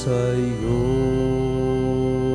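Organ music holding sustained chords, moving to a new chord about half a second in.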